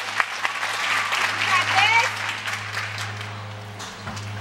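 Spectators clapping, with voices calling out among the claps; the clapping dies away about two and a half seconds in, leaving a steady low hum.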